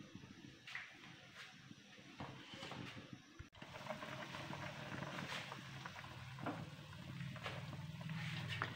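Faint cooking sounds from a pot of soup on the stove: a few light clicks and taps, with a faint steady low hum in the second half.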